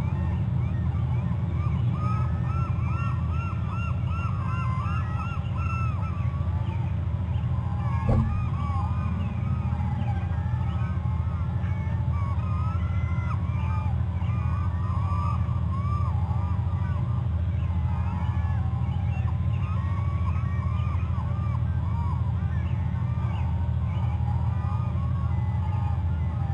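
A dense chorus of many short, repeated animal calls overlapping all the way through, over a steady low hum. A single sharp knock comes about eight seconds in.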